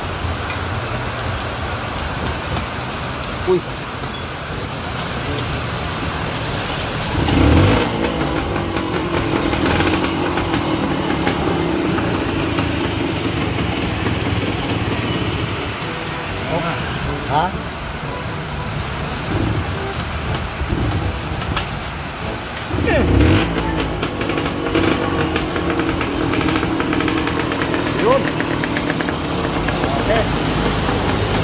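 Steady rain hiss mixed with the running of motor vehicle engines, which swell loudest twice, about a quarter of the way in and again about three quarters in.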